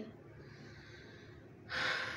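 A woman takes a quick, audible breath in near the end, after a quiet pause.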